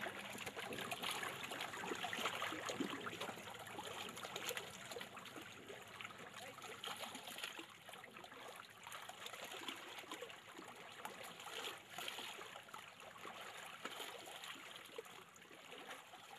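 Faint, steady trickling of running water, like a small stream.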